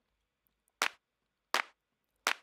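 Two hits of a layered hand-clap sample, about three-quarters of a second apart. The sample is a recording of many claps summed into one file, played twice per hit: once as recorded and once pitched up a third, slightly offset so each hit flams.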